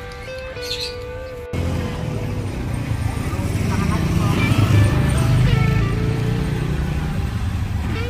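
Background music, then, about a second and a half in, the sound of a small motor scooter riding past close by: its engine grows louder to a peak near the middle and fades as it moves away.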